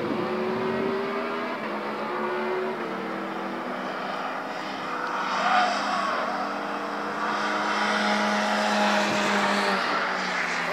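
Cars driving hard around a race circuit, their engines heard from the trackside, engine notes rising and dropping back with gear changes as they accelerate through the bends.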